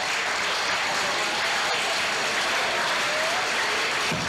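Audience applauding steadily at the end of a toast.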